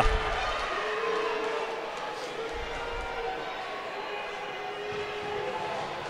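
Arena crowd murmuring, a steady background of many voices, with a faint held tone running through it.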